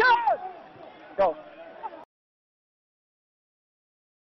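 Shouted speech ("Faster!") over a low background noise, then the audio cuts off abruptly to dead silence about two seconds in.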